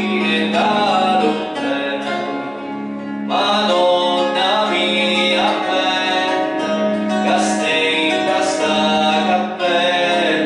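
A man singing into a microphone to acoustic guitar accompaniment, amplified through a PA. The voice drops away briefly a couple of seconds in, leaving the guitar quieter, then comes back in.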